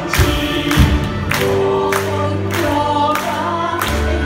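Live orchestra accompanying a group of singers, with sustained string and vocal lines and several sharp percussion hits.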